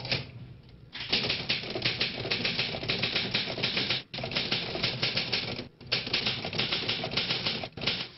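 A fast, clattering run of clicks like typewriter typing, in three stretches with two short breaks.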